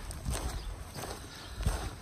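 Footsteps of a person walking at a steady pace on a dirt forest trail strewn with dry leaves, a dull step about every two-thirds of a second.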